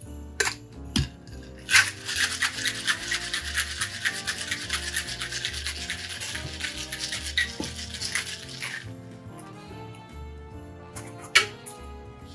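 Ice rattling hard and fast inside a Boston cocktail shaker, a metal tin capped over a pint glass, shaken for about seven seconds after a couple of light knocks as the tin is seated. Near the end, one sharp knock as the tin and glass are broken apart for straining.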